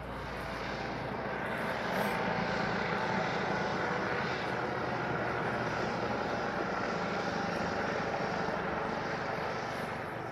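Eurocopter EC135 P2+ police helicopter flying overhead: a steady twin-turbine helicopter sound of rotors and engines that grows louder over the first couple of seconds, holds, then eases slightly near the end as it moves away.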